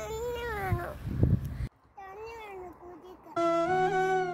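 A young child crying in two wavering wails, the first cut off abruptly and the second following after a brief pause. Near the end a steady flute note starts up and holds.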